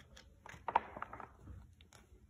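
Pages of a picture book being turned by hand: a few brief paper rustles and taps, mostly from about half a second to a second in.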